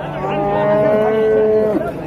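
Young black-and-white heifer calf mooing: one long, steady call lasting about a second and a half.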